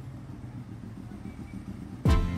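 Motorcycle engine running with a steady low hum as the bike rides along at low speed.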